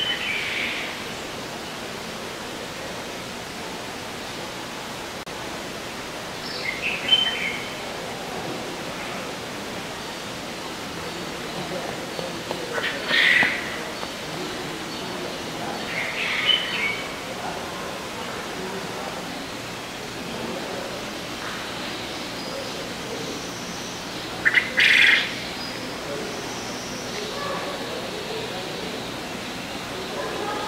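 Birds giving short, sharp calls now and then, about five in all, the loudest a quick double call near the end, over a steady background hiss.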